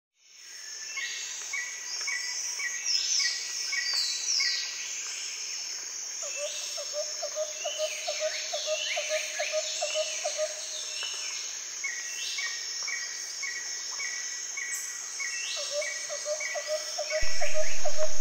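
Birds singing and insects calling: rows of short repeated chirps and falling whistles over a steady high buzz, with a rapid pulsed trill lower down. Near the end music comes in suddenly and much louder.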